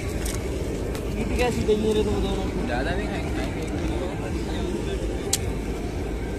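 Indistinct voices of people talking over a steady low rumble, with a single sharp click about five seconds in.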